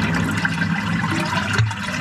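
Dirty wastewater running and draining through a plastic inspection chamber's channels, the sign that the blockage has just been cleared with drain rods.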